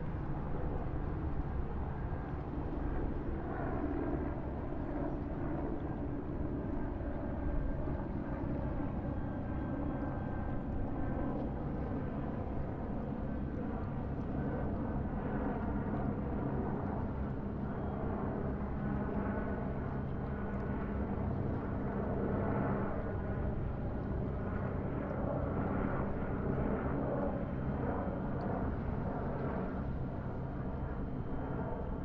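A steady engine drone with a constant low hum that holds without a break.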